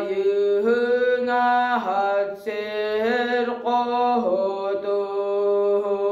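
A boy singing toyuk, the Sakha traditional solo chant: long held notes on a narrow range of pitch, joined by short slides, with a brief break a little before halfway and a long sustained note from about two-thirds of the way in.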